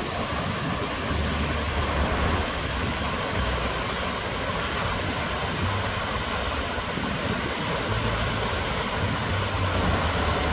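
Otogataki waterfall on the Abukuma River, a wide cascade of white water rushing steadily.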